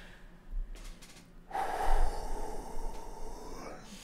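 A man lets out one long, breathy exhale of about two and a half seconds, starting about a second and a half in.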